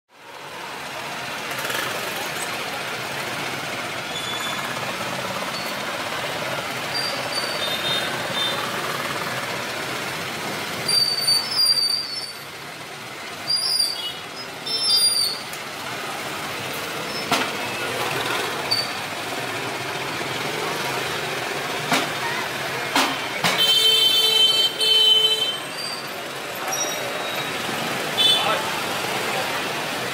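Street ambience: steady traffic noise with people's voices, broken by several short louder sounds. About two-thirds of the way in, a steady-pitched vehicle horn sounds for about two seconds.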